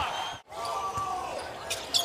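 Basketball game sound in an arena: a ball bouncing on the hardwood and clicks of play over a steady crowd background. A brief dropout about half a second in marks a cut between clips.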